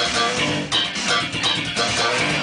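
Electric bass guitar played with slap technique, a fast funky line, with drums and a full band behind it.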